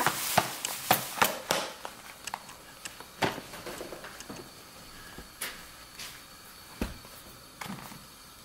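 Scattered light knocks and taps of handling in a kitchen. Most fall in the first second and a half, then a few single ones follow.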